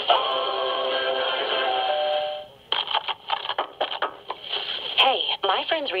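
AM radio broadcast picked up by a homemade pocket AF/RF signal tracer through a ferrite loop antenna and played on its small speaker, loud and clear. Music holding a steady note or chord for about two and a half seconds cuts off, and after a brief gap a voice starts talking, all with the narrow, treble-less sound of AM radio.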